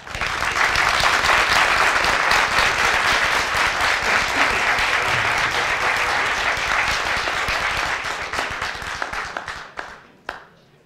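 Audience applauding: a long round of clapping from many people that starts at once, holds steady, and tapers off near the end.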